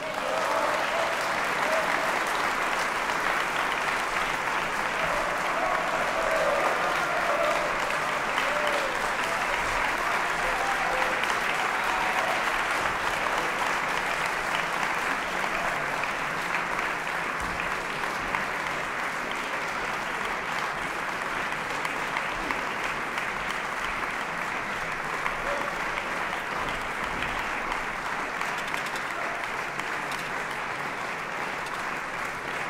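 Large concert-hall audience applauding steadily, with a few voices calling out among the clapping about six to nine seconds in; the applause eases slightly in the second half.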